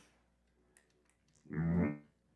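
A single short plucked note on an electric string instrument, lasting about half a second near the end, after near silence.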